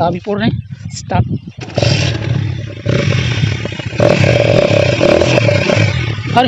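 Hero Honda Splendor Plus single-cylinder four-stroke engine running loudly and revved up, rising in level about two seconds in and again near four seconds, its exhaust modified to sound like a Yamaha RX100.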